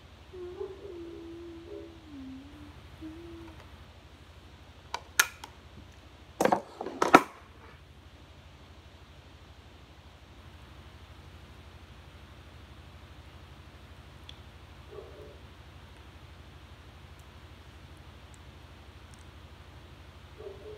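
A dog whining faintly in a wavering, falling tone for a few seconds, then a quick cluster of sharp knocks about five to seven seconds in.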